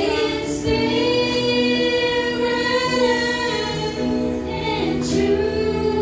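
Christian worship song sung by a choir, with long held notes.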